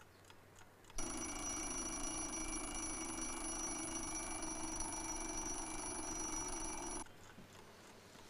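Alarm clock ringing steadily for about six seconds, starting about a second in and cutting off suddenly.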